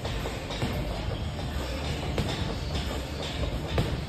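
Heavy battle ropes being whipped in waves, slapping the gym floor again and again in a steady rhythm, over background music.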